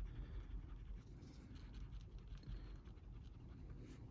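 Eraser pen rubbed back and forth on a comic book's paper cover, a faint quick scratching as it works at a stain.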